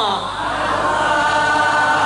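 A woman singing into a microphone: a long held note slides down at the start, then the singing goes on with several voices together.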